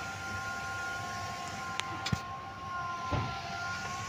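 A steady high whine made of a few held tones over a background hiss, with two light clicks near the middle and a soft knock about three seconds in.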